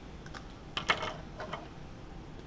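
A few short, light clicks and taps of pens being handled on a wooden desk: a red pen set aside and a highlighter picked up, with the sharpest clicks just under a second in.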